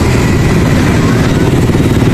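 A motor vehicle engine running nearby, a steady low rumble.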